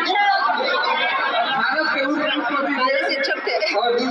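Chatter: several people talking over one another at once, with no single clear voice.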